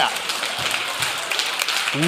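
Congregation applauding: a steady patter of many hand claps.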